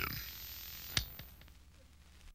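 The fading tail of a recorded spoken narration, with a single sharp click about a second in, trailing off toward near silence.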